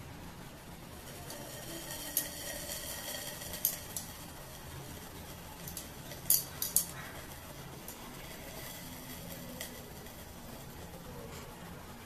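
A few light clicks and clinks from a glass test tube held in a metal test tube holder while it is heated over a micro burner, over a faint steady background noise.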